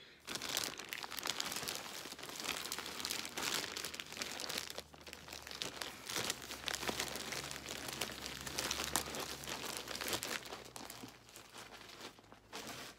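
Clear plastic bag crinkling and rustling steadily as hands rummage in it, dying down near the end.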